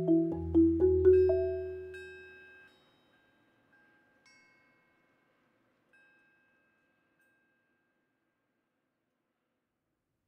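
Marimba: a few low and middle notes struck in the first second or so, left to ring and dying away by about three seconds. Two faint high notes follow, near four and six seconds.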